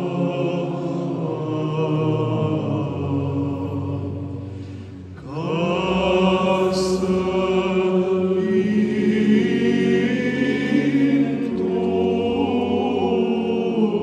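Male choir singing Orthodox Byzantine chant: a solo voice carries the melody over low voices holding a steady drone. Around the middle the singing thins and drops briefly, then comes back fuller and louder.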